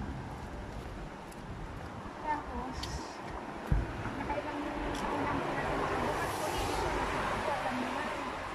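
Street ambience on a wet road: a vehicle passes, its tyres hissing on the wet surface in a swell from about five seconds in, with a single knock near the middle.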